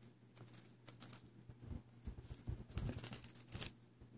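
Faint handling noise of a plastic DVD case and disc: scattered light clicks and rustles, busier in the second half.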